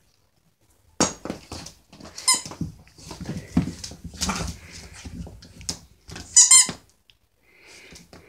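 Rubber squeaky dog toy squeaking: faintly about two seconds in, then a short loud squeak near the end. Between them come scattered clicks, knocks and rustling as a puppy handles and chews its toys on a hard floor.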